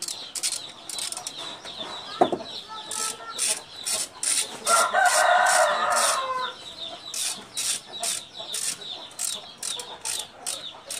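A rooster crows once, a call of about a second and a half about five seconds in, over a steady run of short, high ticks two or three a second. A single sharp knock sounds about two seconds in.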